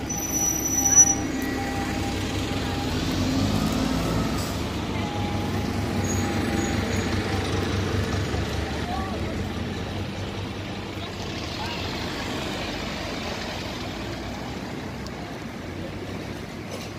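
Mercedes van driving slowly past on a city street with its engine running, amid street traffic noise. A brief sharp sound about a second in is the loudest moment.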